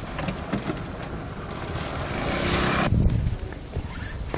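A motor vehicle passing close by, its engine and road noise growing louder over about a second, then cut off abruptly.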